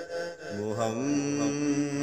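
A man's voice singing a Punjabi Sufi kalam: after a brief breath-like break, he takes up a long held note about half a second in, steps up in pitch just before one second, and sustains it steadily.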